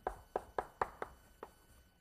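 Chalk tapping on a blackboard as a short word is written: about six quick, sharp taps over a second and a half.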